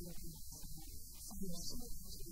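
Steady low electrical hum, with choppy, muffled sounds breaking in and out above it.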